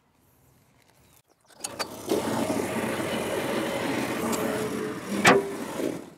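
Small gas engine of a Yardmax YD4103 power wheelbarrow running steadily, starting about a second and a half in, with a sharp clunk near the end.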